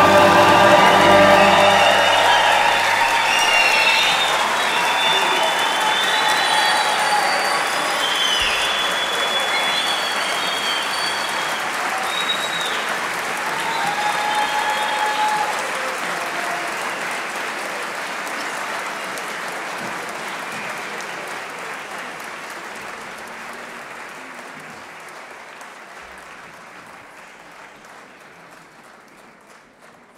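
Concert audience applauding and cheering, with scattered shouts, as the orchestra's last chord dies away in the first two seconds. The applause slowly fades out.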